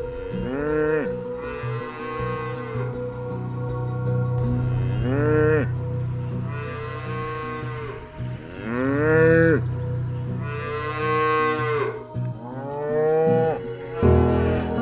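Holstein dairy cow and her calf mooing back and forth, about seven long calls that rise and then fall in pitch: a mother cow calling for her separated calf and being answered. Soft background music with held tones plays underneath.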